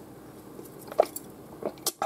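Someone drinking from a glass, with a gulp about a second in and quieter mouth and swallowing sounds after it. A short, sharp click comes near the end.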